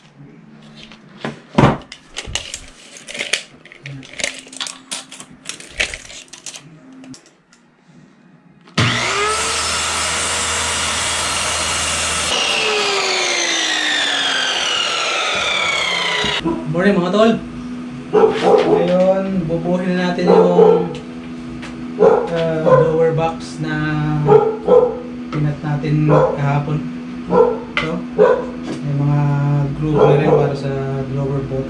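Clicks and knocks of handling for the first several seconds. A handheld corded power tool then runs steadily for about three and a half seconds and winds down with a falling pitch after it is switched off. The rest is background music with a voice over a steady drone.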